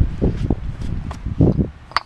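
Footsteps on grass and handling thumps on a body-worn camera: several low thuds and rustles, with a couple of sharp clicks.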